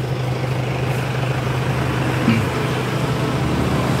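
A steady low motor hum under an even rushing noise, unchanging throughout.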